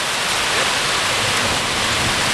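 Floodwater rushing through a washed-out road embankment, a steady loud roar with no breaks.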